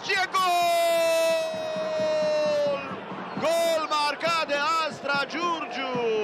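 A football commentator's long drawn-out goal shout, held for about two and a half seconds and slowly falling in pitch, followed by excited commentary.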